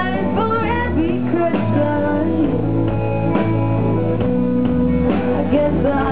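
Live rock band playing loud: electric guitars, bass guitar and drum kit, with a woman singing over them.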